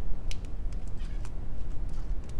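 Small, sparse metal clicks from split ring pliers opening a split ring on a plug lure's hook hanger, over a steady low hum.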